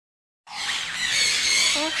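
Red lories screeching: a dense run of high squawks that starts about half a second in and carries on without a break.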